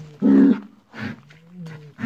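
Bulls bellowing over a dead cow: a short, loud bellow about a quarter second in, then a longer, lower moan in the second half.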